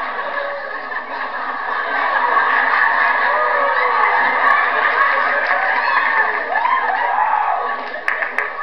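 Studio audience laughing and cheering loudly, with whoops rising out of the crowd noise, easing off near the end.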